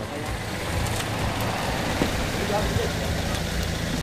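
A small hatchback car's engine running as the car pulls away, with voices around it.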